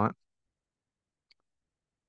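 A spoken word ends at the very start, then near silence broken by one faint, short click a little over a second in.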